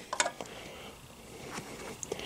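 Two light metal clicks early on and a fainter one later, as a small metal bracket is handled and fitted onto the skid plate's mounting studs.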